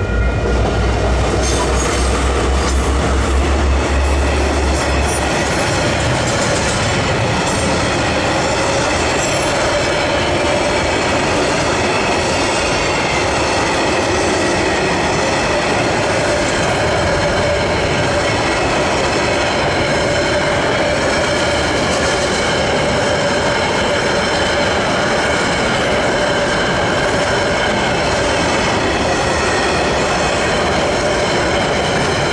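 Freight train crossing a level crossing at close range: a deep engine rumble for the first five seconds or so, then the steady rolling and clatter of container wagons going over the crossing, with a thin squeal from the wheels running through it.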